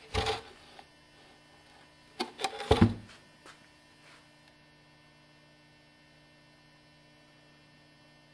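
A short clatter at the start and a cluster of a few sharp knocks between two and three seconds in, the loudest just before three seconds, then a faint steady electrical hum.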